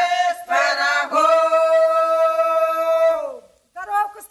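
A single unaccompanied voice singing a Russian folk-style song line, ending on one long held note that stops about three and a half seconds in. The voice starts up again just before the end.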